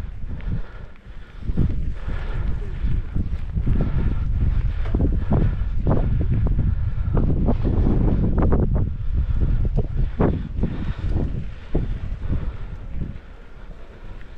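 Wind buffeting the microphone of a camera on a moving mountain bike, with frequent sharp knocks and rattles as the bike rolls over a rough dirt track. It swells about a second and a half in and eases near the end.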